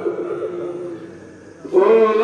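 A man's voice intoning in the sung style of a waz sermon: a long held note fades away, then a loud new chanted phrase starts abruptly near the end.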